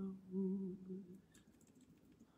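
A lone voice humming a sustained, slightly wavering note at the end of a sung phrase, fading out a little over a second in.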